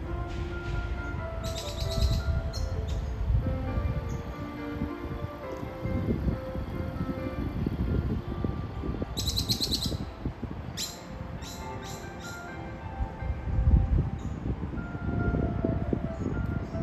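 Small birds chirping in short bursts, once about a second and a half in and again in a run of quick chirps near the middle, over soft background music with held notes.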